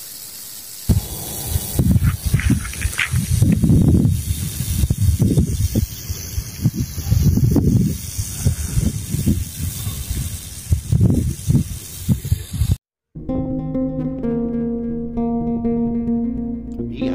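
A rattlesnake rattling, a steady high buzz, under loud irregular low rumbles that start about a second in. Near the end the sound cuts off abruptly and acoustic guitar music begins.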